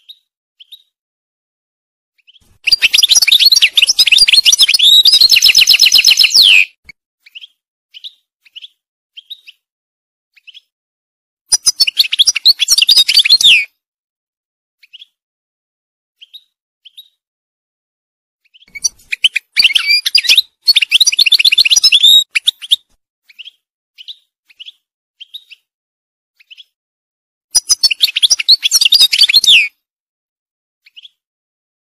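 European goldfinch singing: four bouts of rapid, high twittering song, each a few seconds long, with single short call notes between them.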